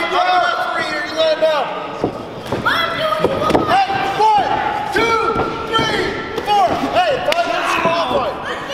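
Wrestling boots squeaking on the ring canvas again and again in short rising-and-falling squeals, with scattered thuds of bodies and feet on the ring mat, echoing in a gym hall.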